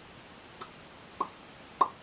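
Tongue clicking: a faint click, then two sharper ones, evenly spaced about two-thirds of a second apart.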